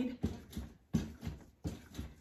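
A mini trampoline (rebounder) with a handlebar thumping as someone bounces on it. About three landings come evenly, a little under a second apart, each a soft thud with a short decay.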